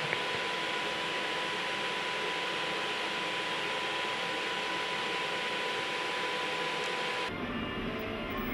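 Steady hiss of the television transmitter's cooling fans in the equipment room, with a thin, constant tone through it. Near the end it cuts abruptly to a quieter, lower room hum.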